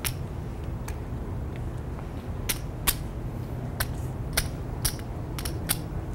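Poker chips clicking as they are handled and stacked at the table: about nine sharp, separate clicks over a low, steady room hum.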